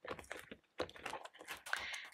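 Clear plastic cash envelope in a ring binder being pressed shut and handled: a run of light, irregular clicks and plastic crinkles.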